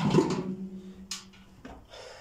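A man's voice trailing off into a drawn-out, steady hesitation sound that fades away, with a brief hiss about a second in.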